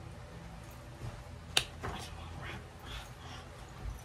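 A single sharp click or snap about a second and a half in, followed by a few softer clicks and faint rustling over low room noise.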